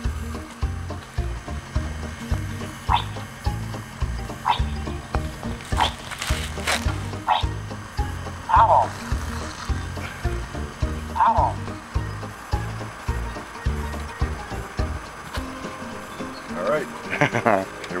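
Music with a steady low beat, broken every second or two by short chirping electronic voice sounds from a WowWee MiP toy robot, with a quick cluster of them near the end.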